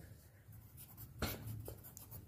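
Pencil writing on a paper workbook page: faint scratching strokes, a few short ones a little past the middle.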